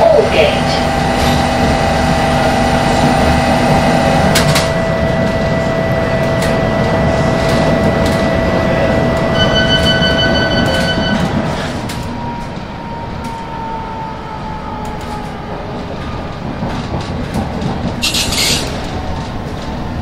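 London Underground train at a platform, with a steady hum and a string of beeps about ten seconds in. Shortly after, the train moves off and the sound drops away.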